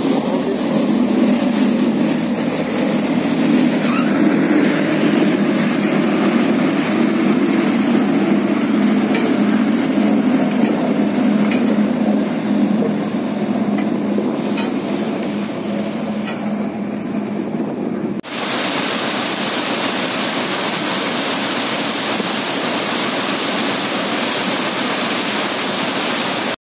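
Pilot boat's engines running with water rushing along the hulls as the boat pulls away from the ship's side, a steady low rumble. About eighteen seconds in the sound cuts abruptly to a steady hiss.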